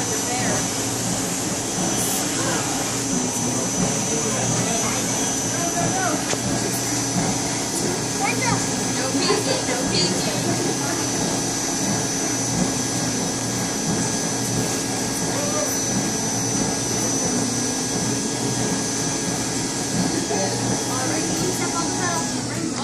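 Build-A-Bear stuffing machine's blower motor running continuously while fluff is blown into a plush bear: a steady rush of air with a thin high whine and a low hum, unchanging throughout.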